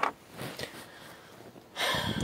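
A person breathing close to the microphone, with a short breath at the start and a louder, noisy exhale near the end.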